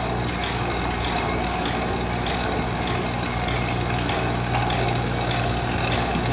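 Stationary exercise bicycle being pedalled for an endurance test: its flywheel and drive make a steady mechanical whir, with a swish repeating about three times every two seconds, over a steady low hum.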